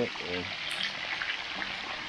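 Pieces of fish frying in hot oil in a cast-iron pan: a steady sizzle throughout.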